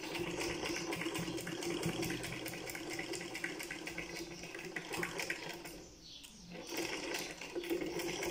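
Black domestic straight-stitch sewing machine running and stitching fabric with a fast, even ticking of the needle. It stops for about a second some six seconds in, then starts stitching again.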